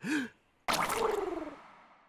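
A young man's breathy vocalisation. There is a short voiced sound at the start, then about three-quarters of a second in a sudden gasping sigh that falls in pitch and fades away.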